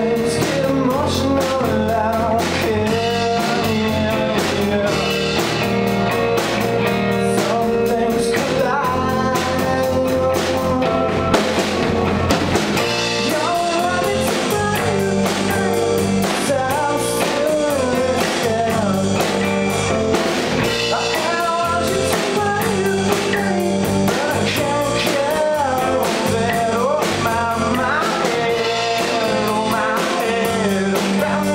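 A live band playing a song: guitar and drum kit with a singer's vocals.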